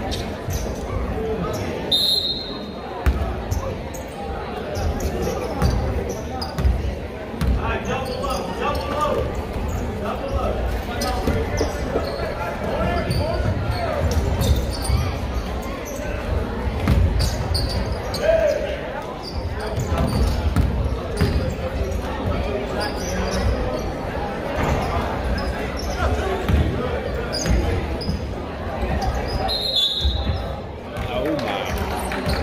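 Basketball game in an echoing gym: a ball dribbled and thudding on the hardwood floor among crowd chatter and shouts. A referee's whistle sounds briefly about two seconds in and again near the end.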